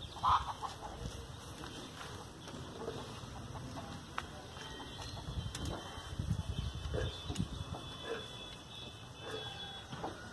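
Chickens clucking, a scatter of short calls, the loudest about a third of a second in, over low rumbling noise.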